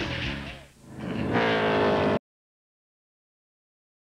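A stock car's V8 engine running at speed, a steady, many-toned sound rising slightly in pitch, starting about a second in. Just over two seconds in, the audio cuts off abruptly into complete silence.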